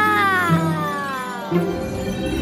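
A cartoon dog's long whining cry, falling steadily in pitch over about a second and a half, over background music.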